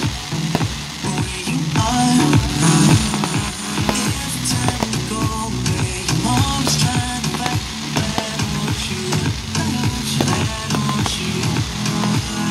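Fireworks crackling and popping as white comets and star shells burst, with many sharp pops through the whole stretch, over music with sustained notes.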